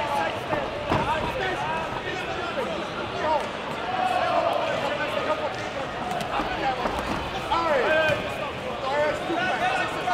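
Sports-hall hubbub of many voices calling out during a kickboxing bout, with two dull thuds from the fighters in the ring, about a second in and again about seven seconds in.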